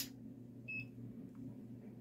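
One short, high electronic beep from a handheld Fochanc digital multimeter as its controls are worked, about a third of the way in, over a faint low hum.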